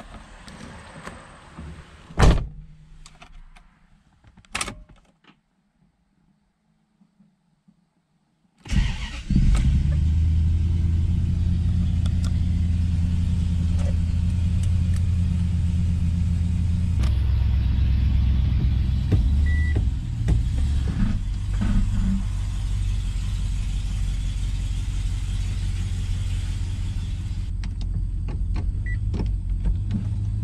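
Toyota Century's V8 engine started with the key, catching suddenly after a pause and then idling steadily with a low, even hum. Two sharp clicks come before the start.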